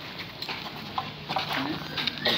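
Footsteps of a crowd walking on concrete and dirt, irregular scuffs and taps, with low murmured voices.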